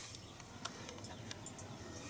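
Quiet background ambience with a few faint clicks and faint high chirps.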